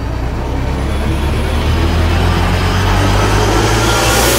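A deep rumbling noise that swells steadily louder and brighter, a build-up sound effect in a music video's intro.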